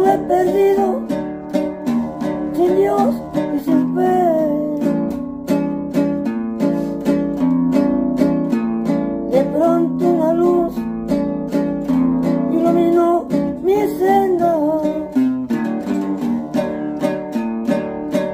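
Acoustic guitar strummed briskly in a steady rhythm, with an old man's voice singing a praise-song melody over it in short phrases.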